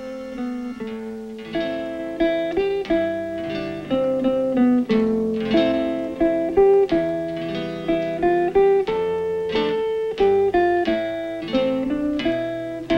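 Instrumental music on a plucked string instrument: a slow melody of single notes and chords, each note struck and left to ring and fade.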